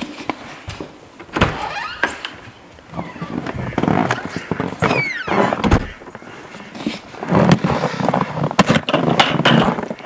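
An exterior door opened and shut with knocks and clunks and a brief falling squeak about halfway, then footsteps crunching through snow near the end.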